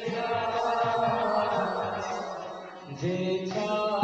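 Devotional kirtan chanting: voices singing a sustained, melodic chant with musical accompaniment and low repeated beats underneath. The sound dips briefly and a new phrase begins about three and a half seconds in.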